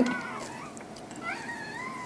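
Faint, thin high-pitched whine from a young Rottweiler puppy, rising and then holding in the second half.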